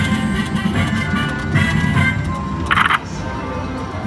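Treasure Voyage slot machine playing its free-games music and reel-spin sounds while the reels spin, with a short bright burst of sound about three seconds in.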